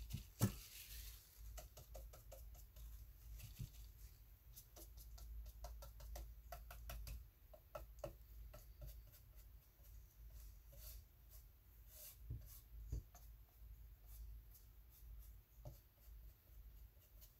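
Faint soft dabbing on watercolour paper, with scattered small taps and clicks from handling the painting tools, over a low steady room hum.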